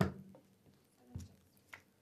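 A drinking glass set down on the poker table with a sharp knock, followed about a second later by a softer knock and a faint click.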